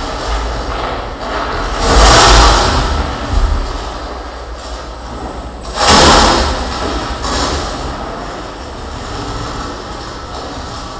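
Harsh noise from contact-miked chains and sheet metal, amplified into a dense, distorted wash of noise with a heavy low rumble. It swells loudly twice, about two seconds in and again about six seconds in.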